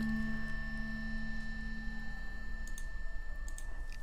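A steady low hum with a fainter high whine above it, and a few soft clicks in the second half.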